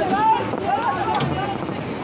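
Fast-flowing floodwater rushing steadily, with wind buffeting the microphone. Voices talk over it in the first second.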